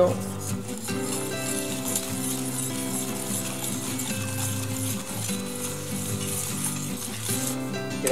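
Wire whisk stirring a wet mix of rolled oats, egg, oil and grated carrot in a metal bowl, from about a second in until near the end, over steady background guitar music.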